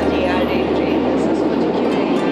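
Steady running noise inside a moving passenger train: a dense rumble with a low hum underneath, with a woman's voice faintly over it.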